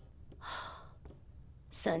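A woman's single breathy sigh, about half a second long, followed by her voice starting to speak near the end.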